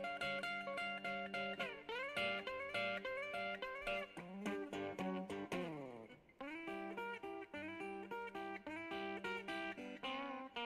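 Instrumental guitar break in a background song: plucked guitar notes with many bends and slides over a steady low accompaniment, with a long falling slide and a brief drop in loudness about six seconds in.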